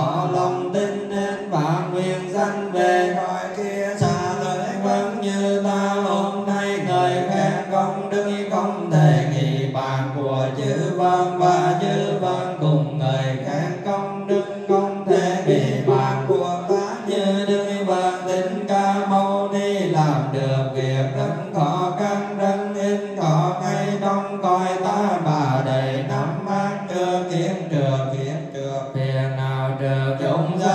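A Buddhist congregation chanting together in unison: a continuous sung recitation that moves in slow rising and falling phrases without pause.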